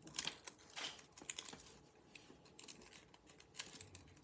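Faint, irregular crinkling and crackling of a thin sheet of nail transfer foil as it is pressed onto the painted nail and pulled away, with a few sharper crackles near the start and about a second in.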